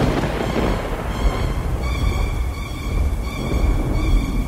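Thunder rumbling low and heavy, loudest at the start, under a dark music drone of steady held tones.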